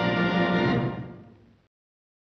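Orchestral music holding a final sustained chord, which fades from about a second in and stops dead shortly before the end.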